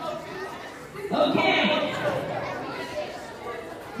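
Indistinct talking and chatter from a group of people, with no clear words.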